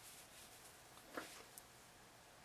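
Near silence, with faint rustling of a crocheted cotton dishcloth being handled and one soft tick a little over a second in.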